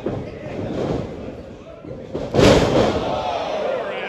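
A wrestler's body hitting the ring mat, one loud thud about two and a half seconds in, with crowd voices shouting around it.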